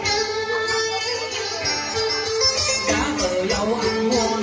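Vietnamese vọng cổ accompaniment playing an instrumental passage between sung lines: plucked đàn kìm (moon lute) with a guitar, in steady melodic runs. Near the end a man's singing voice comes in over it.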